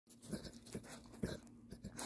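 German Shepherd puppy breathing and moving through snow close to the microphone: a few faint, irregular soft puffs and crunches.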